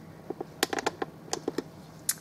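About a dozen light clicks and taps in quick succession over roughly a second and a half, over faint room tone.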